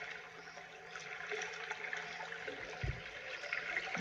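Soft, steady rushing noise like gently moving water, over a faint low hum.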